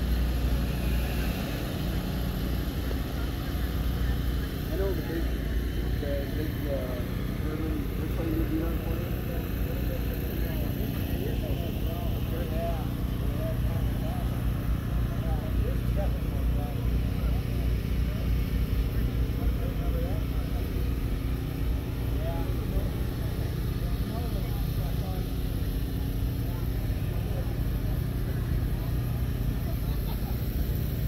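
A steady low engine-like hum runs throughout, with the voices of people talking in the background.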